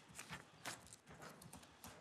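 Near silence with a few faint, scattered taps and paper handling.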